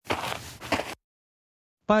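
Camera shutter sound effect, lasting about a second.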